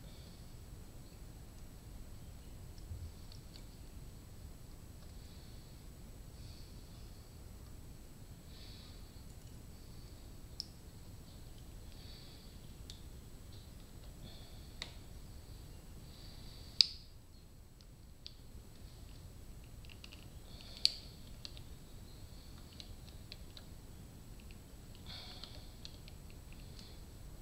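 Small metal clicks and light scraping as a motorcycle piston is worked onto its connecting rod with the wrist pin and snap ring being fitted, with two sharp, louder metallic clicks in the second half.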